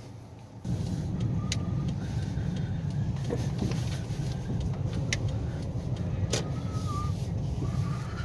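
A car driving, heard from inside the cabin: a steady low rumble of engine and tyres that starts about half a second in, with a few short clicks.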